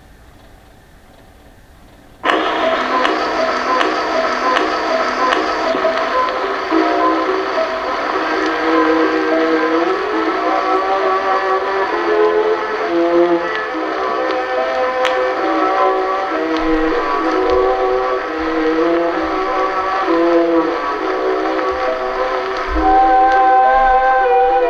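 Edison Diamond Disc record playing: faint surface hiss from the groove, then about two seconds in, an acoustically recorded 1914 orchestra starts suddenly and plays on, thin and boxy in tone with the surface noise underneath.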